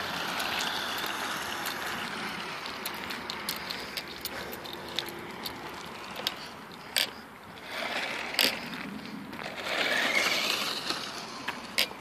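Maisto Tech Baja Beast toy-grade RC buggy driving on asphalt: its electric motor and gears whir along with tyre noise, swelling as it speeds up near the start and again in two spurts toward the end, with a few sharp clicks in between.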